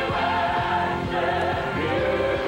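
Gospel choir singing sustained notes together over instrumental accompaniment with a steady beat.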